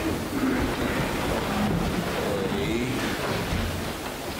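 Steady low rumble of room noise in a large hall, with faint, indistinct voices murmuring underneath.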